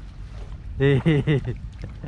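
A man laughing, three short loud bursts about a second in, over a steady low rumble.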